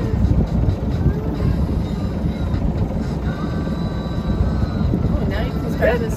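Steady low rumble aboard a sailboat under way at slow speed.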